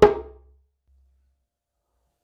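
A djembe tone stroke, the last of four open tones played hand after hand, rings out right at the start and dies away within about half a second, followed by silence.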